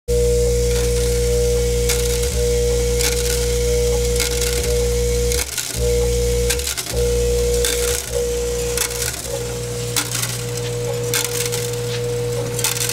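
Vibratory bowl feeder of a Batchmaster III counter running with a steady hum and a clear tone, while small metal dental braces rattle and click along its stainless steel spiral track. The hum cuts out briefly twice, about five and a half seconds in and again just before seven seconds.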